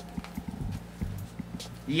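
Light footsteps on a wooden floor: a run of soft, uneven knocks over a low steady hum.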